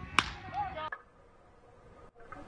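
A baseball bat hitting a pitched ball: one sharp crack about a quarter second in.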